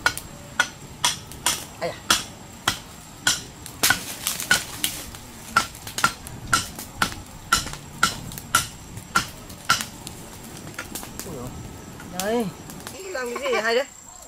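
Machete chopping into a tree branch: a run of about twenty sharp knocks, roughly two a second, each with a slight ring, stopping about ten seconds in. Voices are heard briefly near the end.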